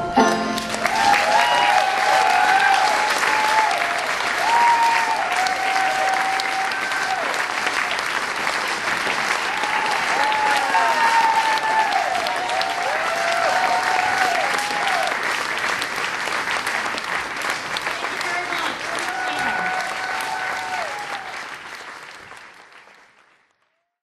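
Audience applauding and cheering, with whoops rising above the clapping, fading out near the end.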